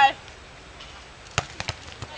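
A beach volleyball struck by hand: one sharp smack about a second and a half in, followed by a couple of lighter ticks.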